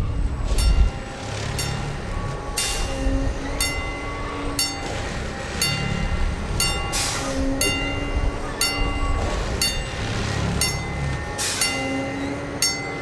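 Gleisstopfroboter S7 PLS 16 4.0-S track tamping machine running its diesel engine as it rolls slowly over a level crossing, with a regular ringing warning signal about once a second.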